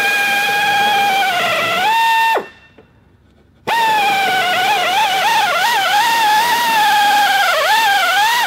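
Air drill spinning a spot weld cutter into car-body sheet steel, drilling out factory spot welds: a high, steady whine. The pitch rises and the drill stops about two seconds in. It starts again about a second and a half later, the pitch wavering and dipping as the cutter bites.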